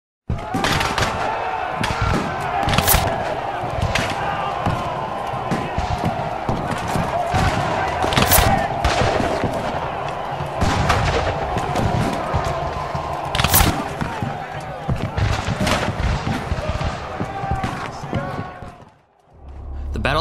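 Civil War battle sounds: a crowd of men yelling over continual rifle fire, with three sharp, louder shots about five seconds apart. It fades out just before the end.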